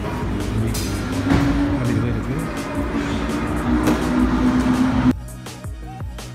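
Background music over the sound of car engines, with a few rises in pitch. About five seconds in, the car noise cuts off abruptly and the music carries on alone.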